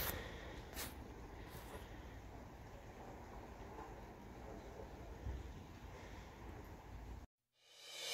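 Faint outdoor background noise with a couple of soft camera-handling knocks, cutting off to dead silence shortly before the end.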